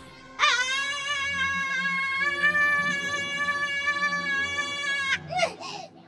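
A cartoon character's long, high-pitched scream: it jumps up in pitch at the start, is held steady for nearly five seconds, then cuts off, followed by a couple of short cries near the end.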